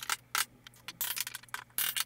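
A hammer and pry bar working wooden door trim loose, played back greatly sped up: quick irregular clicks, taps and scrapes.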